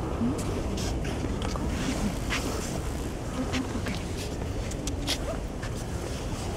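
Outdoor ambience: the low murmur of distant visitors' voices over a steady low rumble of wind on the microphone, with scattered faint clicks.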